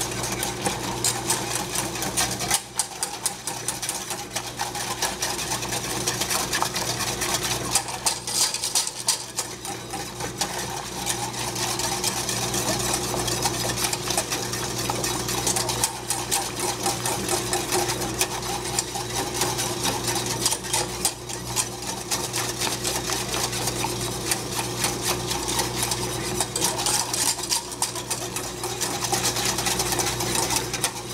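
Wire whisk beating fast against the sides and bottom of a stainless steel saucepan, a continuous rapid clatter, as cocoa and flour are whisked into the liquid.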